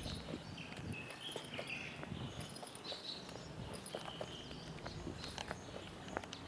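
Footsteps on a concrete path as someone walks, irregular light steps, with short faint chirps in the background.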